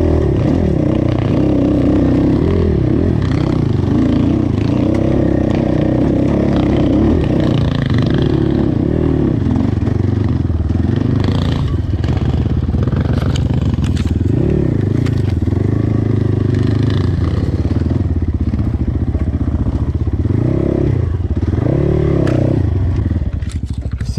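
ZUUM CR300NC enduro bike's 300 cc single-cylinder engine (the 177 engine) climbing a steep, rocky trail under load, its revs rising and falling again and again as the throttle is worked.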